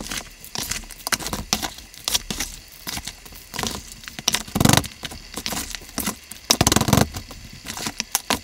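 Potting mix scooped with a plastic scoop from a plastic tub and poured into a plastic nursery pot around cuttings: irregular scraping, rustling and pattering of soil, with two louder bursts a little past halfway and near the end.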